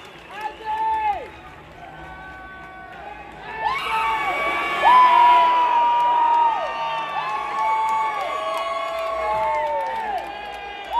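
Concert crowd cheering and yelling, with single drawn-out shouts near the recorder, swelling louder about four seconds in.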